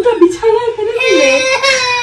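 A toddler crying in high-pitched wails, the longest held through the second half.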